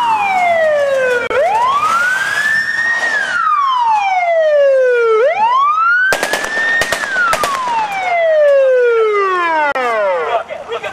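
Police siren wailing in slow cycles, its pitch sweeping down and up again about every three to four seconds and ending on a long falling wail. A few sharp bangs cut through it about six to seven and a half seconds in.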